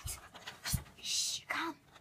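Two sharp knocks of small plastic toy figures set down on a wooden floor, then a short breathy hiss and a brief vocal sound from the child voicing them.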